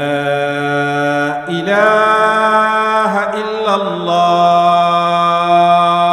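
A man calling the adhan, the Muslim call to prayer, singing one long phrase on drawn-out notes that step up and down in pitch.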